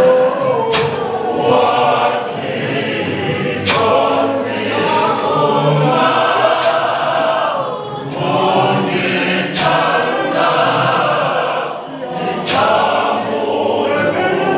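A large mixed choir of men and women singing a gospel song in isiZulu, with frequent sharp clicks through the singing.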